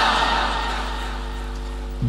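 Audience calling out 'Subhan Allah' together in answer to the speaker, the shout of many voices dying away over about two seconds above a steady electrical hum.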